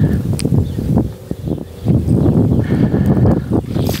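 Water being forced through a garden hose from a frost-free yard hydrant, sputtering and surging in irregular rough gushes as trapped air is pushed out ahead of the flow.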